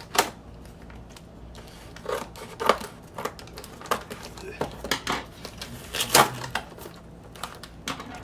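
Scissors slitting the packing tape on a cardboard record mailer, with irregular crinkles, clicks and scrapes of tape and cardboard. The loudest snaps come about a fifth of a second in and around six seconds in.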